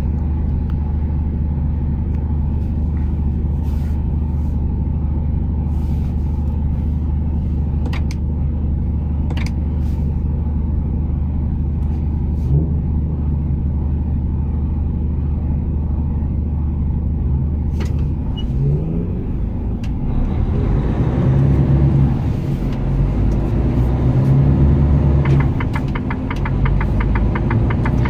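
Truck's diesel engine heard from inside the cab, idling steadily while stopped, then pulling away about two-thirds of the way through, the engine note rising and growing louder as it picks up speed.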